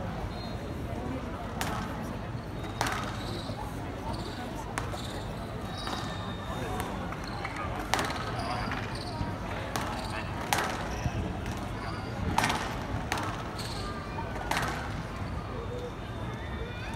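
Squash ball being struck by rackets and hitting the walls of a glass show court during a rally: sharp smacks about every one to two seconds, with short squeaks of shoes on the court floor.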